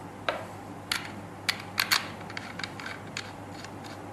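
Sharp clicks and taps of small hard parts being handled as an e-cigarette atomizer is picked up from the table and brought to the vape mod. Several clicks crowd into the first two seconds, then lighter ticks follow.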